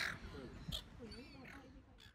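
Silver gulls calling, with a few harsh squawks among curving cries, growing fainter toward the end.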